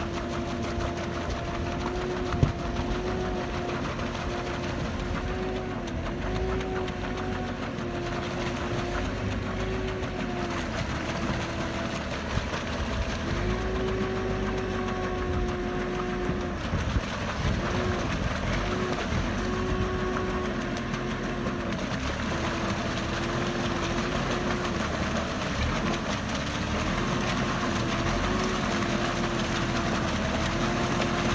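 Sherp amphibious ATV's diesel engine running steadily with a whining tone whose pitch repeatedly dips and recovers as the throttle and load change while the vehicle pushes through broken lake ice. A few sharp cracks stand out, the loudest about two seconds in.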